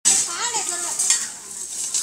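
Scraping and crackling rustle of litter and dry debris being raked and gathered off bare earth with hand tools, with a few sharper scrapes, over women's voices nearby.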